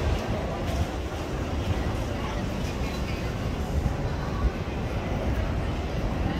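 Steady low rumble of outdoor background noise with faint voices of people talking in the distance.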